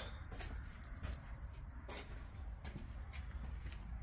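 Quiet background: a steady low rumble with a few faint, soft taps and rustles scattered through it.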